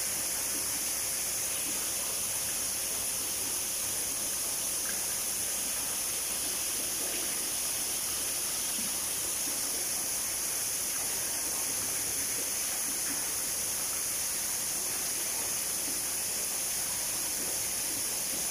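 Water pouring steadily into a shallow pool from an inlet, an even, unbroken hiss.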